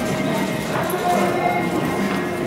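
Hoofbeats of a cantering show-jumping horse passing close by on the arena footing, over steady background music.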